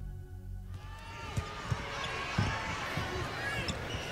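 Ambient music ends under a second in, giving way to the sound of a basketball game: a ball bouncing several times against a background of crowd voices.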